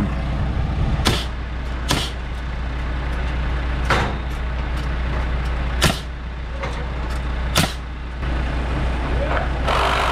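A lift's diesel engine idling steadily, with five sharp pneumatic framing-nailer shots spaced one to two seconds apart as a wall brace is nailed off.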